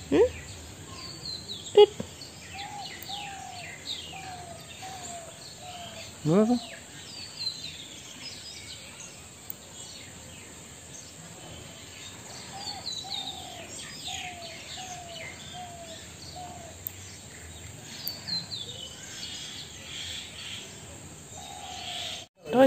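Outdoor birdsong: many short high chirps, and twice a run of five or six short, lower falling notes from one bird.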